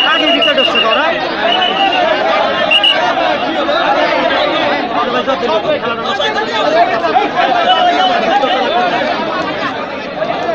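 A large crowd of spectators talking and calling out at once, many voices overlapping at a steady loud level. A few short high, steady tones sound in the first three seconds.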